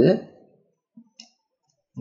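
Two quiet clicks about a second in, close together, from the plastic layers of an Axis Cube puzzle being turned by hand.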